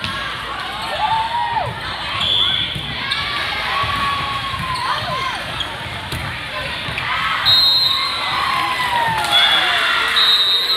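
Indoor volleyball rally in a large, echoing gym: sharp ball contacts and players' shouted calls over crowd chatter. Several short high-pitched squeaks come in the middle and near the end.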